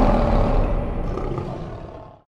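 Lion roar sound effect at the end of a logo jingle, over the tail of its music, fading out steadily.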